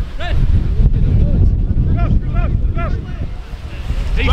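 Wind buffeting the microphone in a steady low rumble, with a few short shouts from players on the pitch, one near the start and a cluster about two seconds in.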